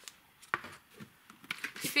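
A small plastic tub of soil set down on a wooden table: a single light knock about half a second in, then a few faint handling clicks.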